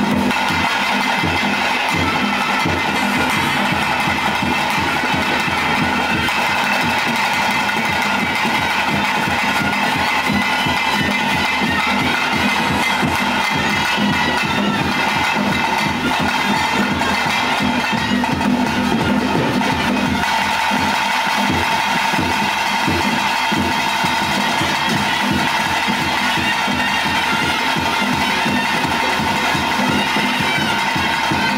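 Traditional ritual music played live: reed wind instruments hold steady, drone-like notes over a fast, continuous beat on barrel drums.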